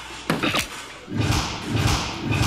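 A soft-tip dart striking an electronic dartboard, with sharp knocks a little way in, then a run of louder noisy bursts.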